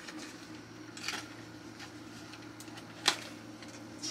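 Quiet handling of a small cardboard box, with a soft tap about a second in and a sharper click about three seconds in, over a steady low hum.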